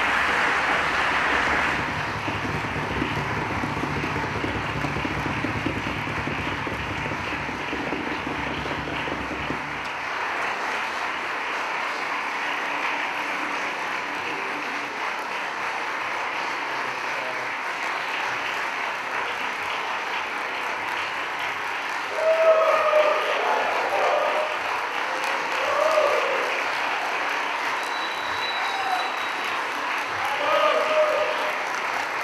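Concert-hall audience applauding steadily, with a low steady hum under the clapping that stops about ten seconds in. A few voices shout out over the applause about two-thirds of the way through.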